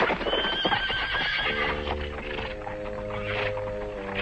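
A horse whinnies with a wavering, high-pitched cry over hoofbeats for the first second and a half, a cartoon sound effect. Held music chords then come in and carry on.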